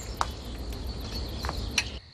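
Crickets chirping in a steady, even pulse over a low rumble, with a couple of faint clicks near the end.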